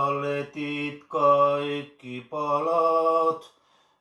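A man singing a Finnish spiritual song unaccompanied, in long held notes with short breaks between phrases. The singing stops about half a second before the end.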